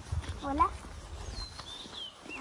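One short rising vocal call about half a second in, over a low rumble that fades after about a second and a half; a few faint high chirps near the end.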